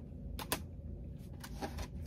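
Plastic CD jewel cases handled on a table: two sharp clicks about half a second in, then a few faint ticks, over a low room hum.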